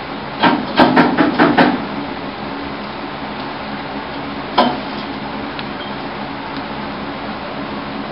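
Sharp knocks of work on a race car: a quick run of about five in the first two seconds, then a single one about four and a half seconds in. A steady drone runs underneath.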